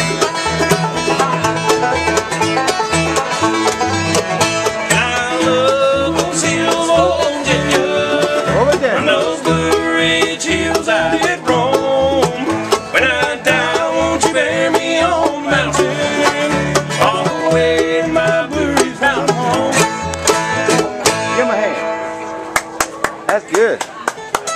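Live acoustic bluegrass band playing: banjo, mandolin, acoustic guitar and upright bass over a steady bass beat. The tune winds down about 22 seconds in, leaving a few loose guitar and banjo strums.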